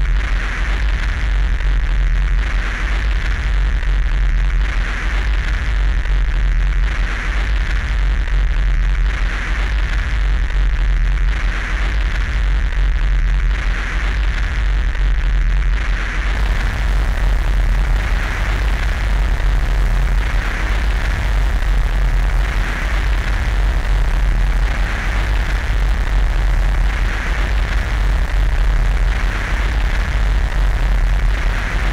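Dark ambient noise intro of an industrial/neofolk track: a heavy low drone under a hissing band that swells and fades about every two seconds. About halfway through, a brighter hiss opens up in the highs.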